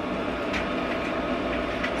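Steady room background noise: a continuous low hum and hiss with a faint steady tone through it, like a running air conditioner or fan.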